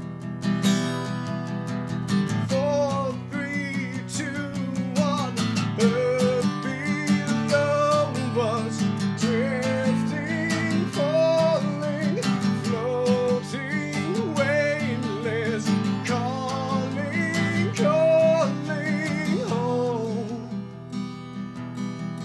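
Acoustic guitar strummed steadily while a man sings a wavering, held melody over it, getting somewhat quieter near the end.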